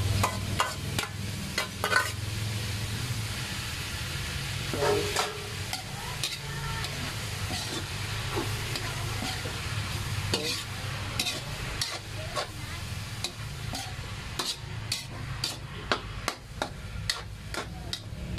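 Chopped pork sizzling as it sautés in a steel wok, stirred with a metal spatula that scrapes and clicks against the pan many times throughout.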